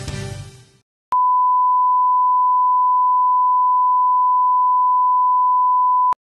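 The tail of a commercial jingle fades out, and about a second in a steady 1 kHz line-up tone starts. It is the reference tone that goes with colour bars, one pure unchanging tone at a constant level.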